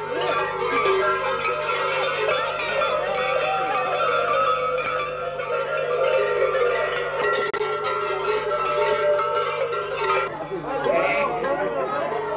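Many large bells clanging together in a continuous ringing, the bells worn by masked Surva mummers (survakari) as they move. Voices come in about ten seconds in.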